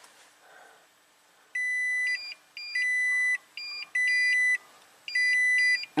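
2020 Toyota Tundra's dashboard warning chime, starting about a second and a half in: a held electronic tone followed by quick shorter pips, repeated about five times. It is the parking-assist system signalling a sensor fault.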